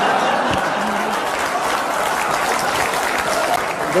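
Studio audience applauding steadily, with some laughter, in response to a joke's punchline.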